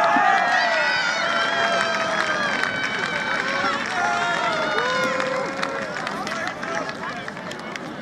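Several voices shouting and calling out on a football pitch, overlapping, with some long drawn-out shouts.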